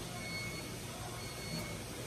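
Steady low room hum with a faint high tone coming and going; no distinct event.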